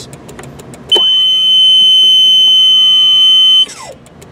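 Electronic warning buzzer on the brake control panel, sounding one steady high-pitched beep for nearly three seconds after tow mode is selected. It starts about a second in and cuts off suddenly near the end.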